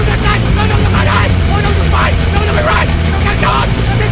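A voice over a steady low rumbling drone, in a break within a hardcore/grindcore record.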